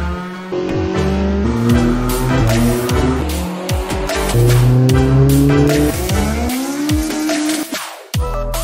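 Background music with a heavy beat, mixed with a car engine revving hard on a chassis dyno, its pitch climbing through each rev and dropping back.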